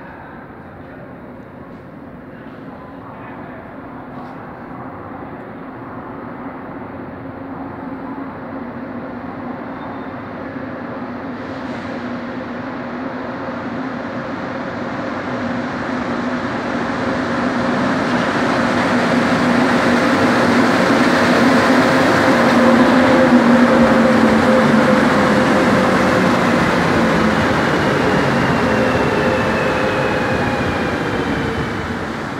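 Montreal metro Azur rubber-tyred train arriving at the platform, its running noise and motor hum growing steadily louder for about twenty seconds. Near the end a low hum falls in pitch as the train slows alongside the platform.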